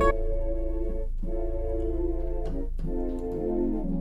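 Sustained A♭ chords played on a software gospel keyboard patch with an organ-like tone. There are three chords, each held steady for about a second with short gaps between them, over a continuous low bass note.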